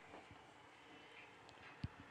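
Near silence: faint background hiss, with one short, faint low knock just before the end.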